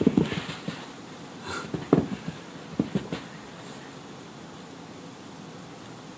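A dachshund puppy gives a few short, low vocal sounds while playing with a plush toy in the first three seconds, then only a faint steady hiss remains.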